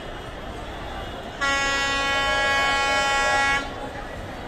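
Diesel locomotive's horn sounding one steady blast of a little over two seconds, starting and stopping abruptly, as the train approaches a crowded station platform.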